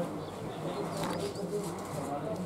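A pigeon cooing, a low call repeated in short even notes, with faint distant voices.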